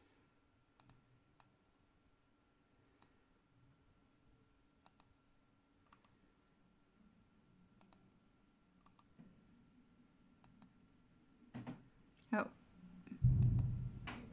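Sparse, quiet computer clicks from working a laptop, some in quick pairs like double-clicks, a second or two apart. Near the end come a louder knock and a low thud.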